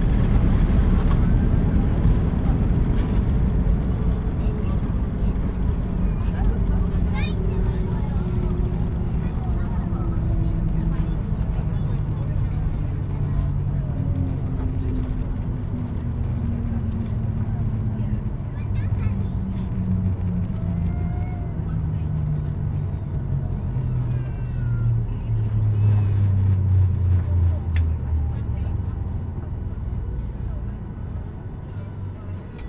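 Boeing 737-800 on its landing rollout, heard from the cabin over the wing: the loud jet and airflow noise eases off as the aircraft slows, and an engine tone falls steadily in pitch as the CFM56 engines wind down.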